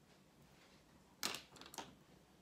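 Two short knocks from small objects being handled, a little after a second in and again about half a second later, against quiet room tone.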